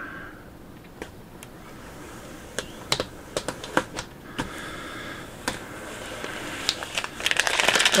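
Fingers and fingernails pressing and tapping vinyl decal onto a plastic bucket: scattered light clicks and ticks, with a crinkling of plastic film building up near the end.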